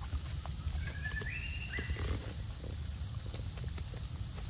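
Outdoor forest ambience: a steady low rumble and a steady high drone, with a short whistled call that steps up and then down in pitch, about a second in.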